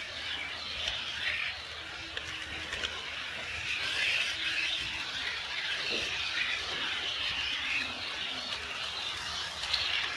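HO-scale model train, an EF81 electric locomotive hauling Twilight Express coaches, running on KATO Unitrack: a continuous high-pitched running noise of wheels on rail and the motor, swelling and fading as it goes.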